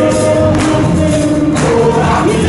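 Gospel music filling a large hall: a choir singing over a band with percussion.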